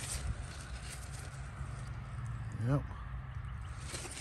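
Quiet outdoor background with a steady low rumble and a few faint rustles in the first half-second; a man says "yep" near the end.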